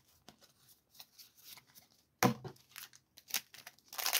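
Trading cards being handled and shuffled by hand: soft rustles and small clicks of card stock, with one louder tap a little over halfway through.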